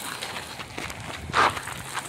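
Outdoor background noise with scattered faint ticks and one short burst of rustling noise about one and a half seconds in.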